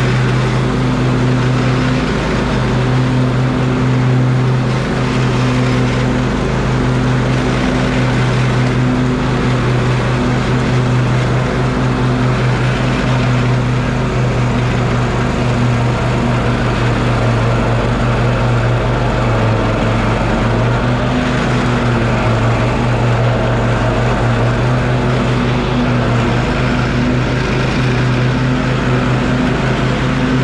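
Husqvarna YTA24V48 riding lawn tractor mowing: its 24 hp V-twin engine runs at a steady pitch under load, with the blades in the 48-inch deck whirring as they cut grass.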